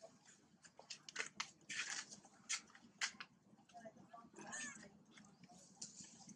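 Long-tailed macaques calling: a run of short, sharp, high squeaks, loudest between one and three seconds in, then a longer wavering squeal a little past four seconds.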